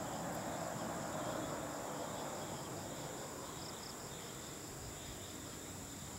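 Dusk insects chirring: a steady high-pitched trill with a pulsing chirp beneath it, over a wash of distant low noise that eases off about halfway through.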